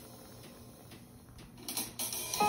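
A quiet gap between background music tracks: faint hiss, then a short cluster of soft clicks near the end, just before the next piece begins.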